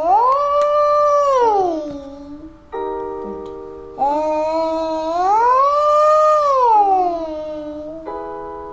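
A child's voice doing vocal slides as a singing exercise: it glides up about an octave, holds the top note, then glides back down, twice, once at the start and again from about four seconds in. Keyboard chords sound under and between the slides.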